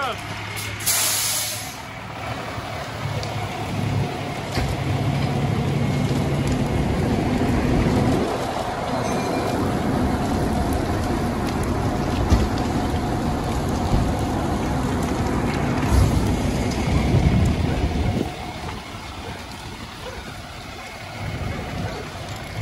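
Fire engine running with a steady low hum, and a short hiss of released air about a second in. From about four seconds a louder steady rushing noise takes over and drops away about four seconds before the end.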